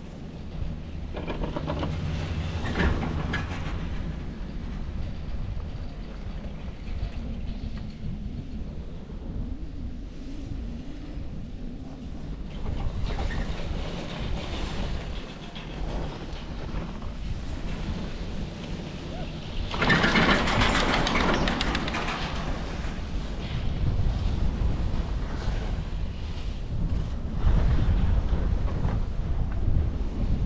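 Doppelmayr detachable chairlift with DS grips, heard from a riding chair: a steady low rumble with wind on the microphone. Twice the chair's grip rattles over a tower's sheave train, once about two seconds in and again, louder, about twenty seconds in.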